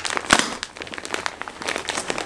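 Clear plastic wrapping of a vacuum-packed dog bed crinkling and crackling as hands pull and scrunch it, in quick irregular crackles with one louder crackle just after the start.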